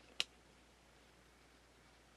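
A single sharp click of hard clear plastic card holders knocking together as one is slid off the other, then near silence with faint room tone.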